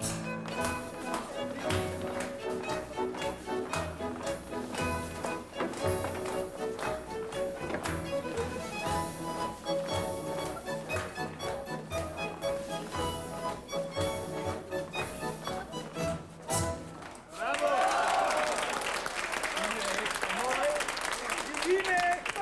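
A small dance band with an accordion plays a lively dance tune over a steady bass beat. The music stops about 17 seconds in, and a noisy crowd of many voices talking and calling out follows.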